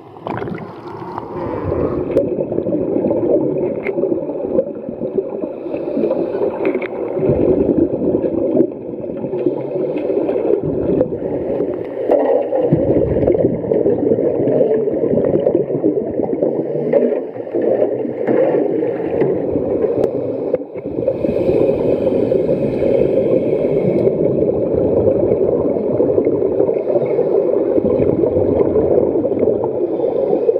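Underwater sound picked up by a camera submerged in a swimming pool: a steady gurgling rush of water with the bubbling of scuba divers exhaling through their regulators.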